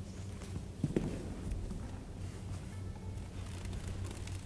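Musicians' footsteps and shuffling as they take their seats with their string instruments, with a sharp knock about a second in, over a steady low hum.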